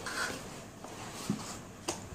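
Soft rubbing and rustling of paperback books being slid out of a cardboard box, with a sharp tap just before the end.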